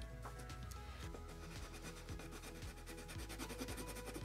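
Quiet background music with steady held notes, under the rubbing of a water-soluble wax crayon (Lyra Aquacolor) stroked back and forth on black paper.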